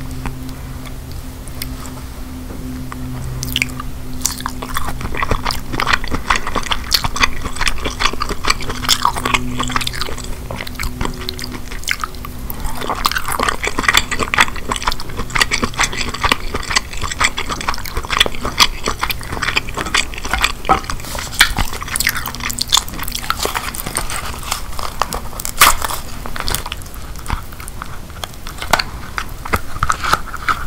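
Close-miked eating of king crab meat: wet chewing, smacking and little clicks of the mouth, growing busier about halfway through. Near the end, hands take hold of a crab leg's shell.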